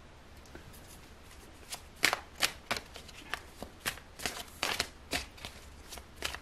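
A tarot deck being shuffled by hand: a run of crisp card strokes, about two or three a second, beginning after a second or two of quiet.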